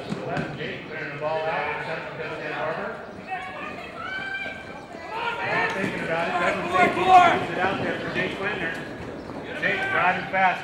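People's voices talking and calling out with no clear words, loudest about seven seconds in, over polo ponies galloping on the arena dirt.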